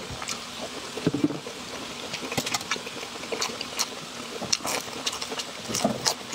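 Close-miked crunchy chewing of broccoli and breaded fried food, with irregular wet crackles and crunches throughout.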